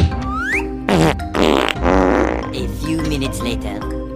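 Cartoon fart sound effects over children's background music: a short rising whistle, then two wobbly farts, the second lasting about a second.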